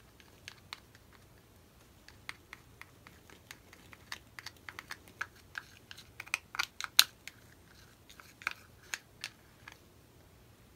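Scattered light clicks and crinkles of a small plastic paint cup and stick being handled in nitrile gloves, busiest from about four to eight seconds in, with the loudest click about seven seconds in.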